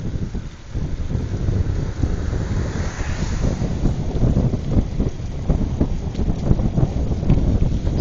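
Wind buffeting the microphone while riding along a street: a dense, gusting rumble. A brief hiss swells and fades about three seconds in.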